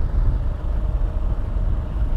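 Kawasaki KLR650 single-cylinder motorcycle engine running steadily while cruising, heard as a low rumble mixed with wind noise on the rider's microphone.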